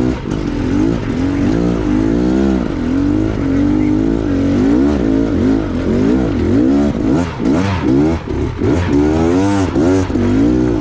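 Off-road trail motorbike engine under load on a rocky climb, its pitch rising and falling with the throttle. The throttle changes come quicker and deeper from about seven seconds in.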